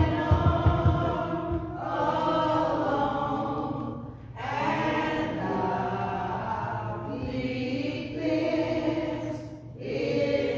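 Congregation singing a hymn, voices holding long notes in phrases, with a break for breath about four seconds in and again near the end. A few low thumps come in the first second.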